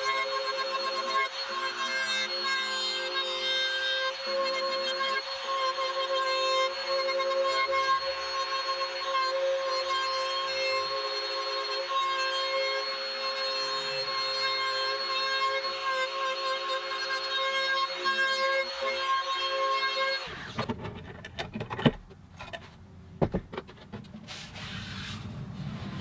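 Bosch trim router with a flush-trim bit running at a steady high whine while trimming the guitar's overhanging back plate flush with the sides. The motor cuts off suddenly about 20 seconds in, and a few knocks and handling sounds follow.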